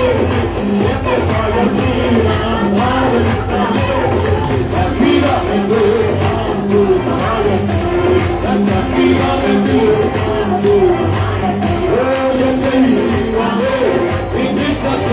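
A group of singers sings a worship song into microphones over band accompaniment, with a steady beat and hand clapping along.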